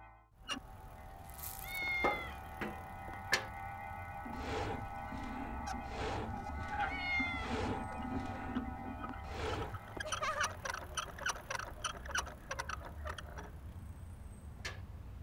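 Background music with held tones, over which a cat meows twice, about two seconds in and again about seven seconds in. Near the end comes a quick run of light clicks.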